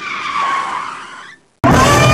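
A hissy, screeching noise with a faint, slightly falling squeal, like tyres skidding, lasts about a second and a half and then cuts off. Near the end a live rock band with electric guitar starts abruptly and loudly.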